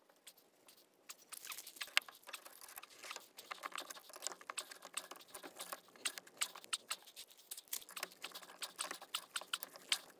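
Pipe wrench tightening a threaded reducing elbow onto a black iron gas pipe: a quick, irregular run of small metallic clicks and ticks, starting about a second in.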